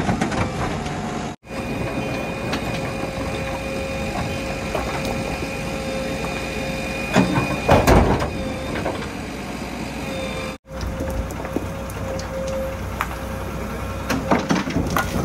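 JCB 3DX backhoe loader's diesel engine running under hydraulic load with a steady whine, while the backhoe works; about seven to eight seconds in, a loud rumble as a bucketful of rock and earth is dumped into a steel tipper truck bed. The sound breaks off for an instant three times at edit cuts.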